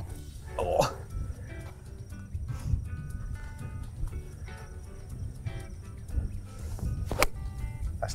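Golf club striking a ball off the tee: one sharp crack about seven seconds in, over a steady rumble of wind on the microphone.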